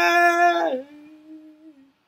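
A man singing unaccompanied into a handheld microphone, holding a long vowel that drops about three quarters of a second in to a softer, lower held note, which fades out near the end.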